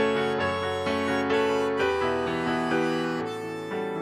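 Instrumental passage on accordion and electric keyboard with a piano sound, playing held notes and chords that change every half second to a second, with no singing.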